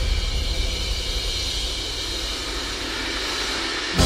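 Orchestral percussion in a musical's overture: the wash of a big crash dies slowly away over a low, dense rumble, with no tuned notes. The full orchestra comes back in loudly right at the end.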